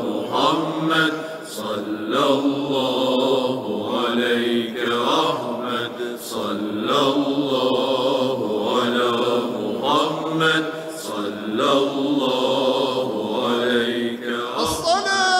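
Arabic devotional chanting of a salawat, the refrain of blessings on the Prophet Muhammad ("sallallahu ala Muhammad"), sung in a phrase that recurs about every two seconds.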